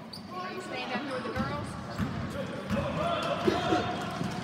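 A basketball bouncing on a gym floor, a few separate thumps in the second half, with voices calling out over the play.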